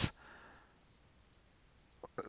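A few faint computer mouse clicks against near silence.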